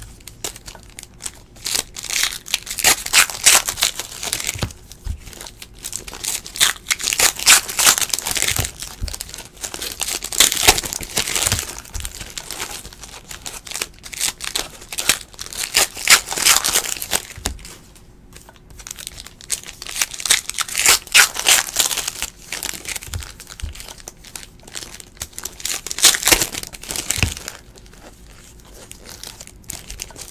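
Foil trading-card pack wrappers crinkling and tearing as packs of 2017-18 Panini Contenders basketball cards are ripped open and the cards handled. The crinkling comes in bursts of a few seconds with short pauses between.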